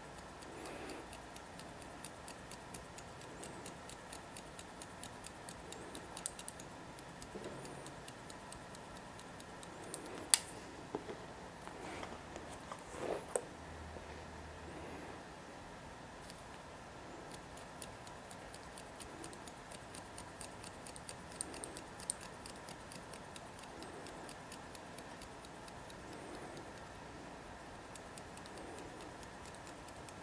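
Hair-cutting shears snipping through wet hair: runs of quick, faint, crisp snips, with one sharper click about ten seconds in.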